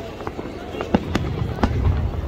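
Fireworks going off: several sharp bangs in quick succession over a low rumble that swells near the end.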